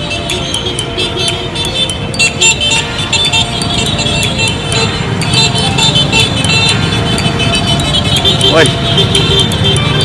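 Music with singing plays over the engine noise of a slow convoy of motorcycles and vans, with a steady beat.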